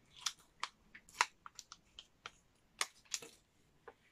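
A small round of cheese being unwrapped by hand: a run of irregular, sharp crinkles and clicks from its wrapper that stops near the end.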